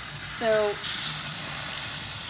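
Sink faucet running, its water spraying onto a clump of bare-root strawberry plants and rinsing soil from the roots: a steady hiss.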